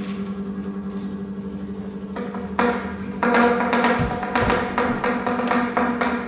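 Free-improvised live music: a steady low electronic drone with sparse percussive taps and knocks that grow denser and louder after about two and a half seconds, with a couple of low thumps near the middle.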